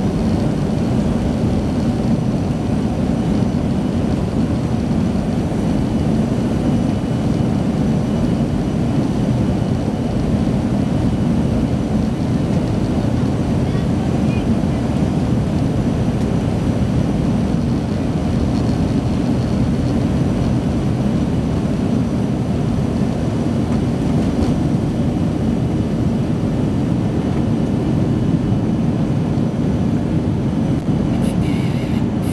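Airliner cabin during the takeoff roll and liftoff: the jet engines at takeoff power make a loud, steady rumble that holds unbroken throughout.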